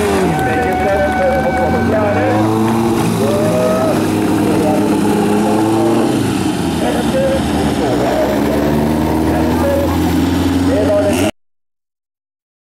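Several bilcross race cars' engines running and revving on a gravel track, pitch rising and falling, over a steady low engine drone. The sound cuts off suddenly near the end.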